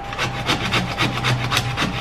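Lemon rubbed quickly back and forth across a flat stainless steel hand grater, a rapid, even run of short rasping strokes as the zest is grated off.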